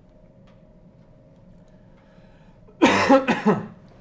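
A man coughing, a quick run of three or four coughs about three seconds in, after a stretch of faint steady room hum.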